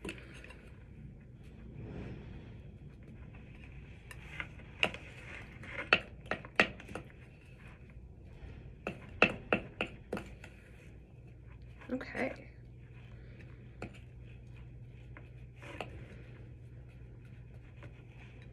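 A spoon stirring thick, dough-like homemade slime in a glass bowl: irregular sharp clicks and knocks of the spoon against the glass, in two clusters a few seconds apart, with soft scraping between.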